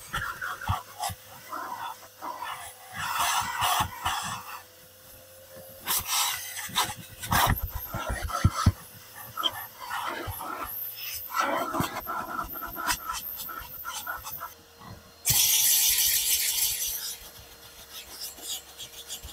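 Car floor carpet being cleaned: a vacuum hose nozzle rasps and knocks irregularly against the pile. Near the end a steam cleaner gives a loud, steady hiss for about two seconds.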